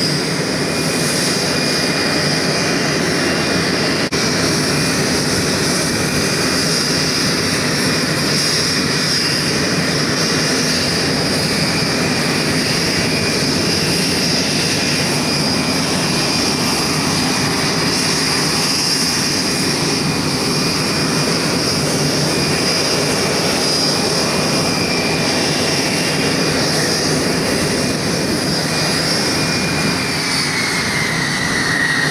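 Tupolev Tu-134's two rear-mounted Soloviev D-30 turbofan engines running, a loud steady jet rush with a high whine held at one pitch.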